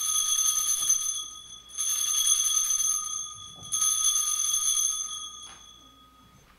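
Altar bells rung three times, each a bright, high-pitched ring that fades over a second or two. These are the Sanctus bells marking the elevation of the consecrated host at Mass.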